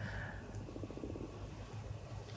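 Quiet pause in a small room: faint room tone with a low steady hum.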